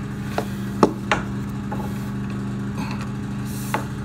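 A handful of short, sharp clicks and knocks of blue PEX water pipe, its black crimp ring and a push-in fitting being handled. The loudest click comes just under a second in, over a steady low hum.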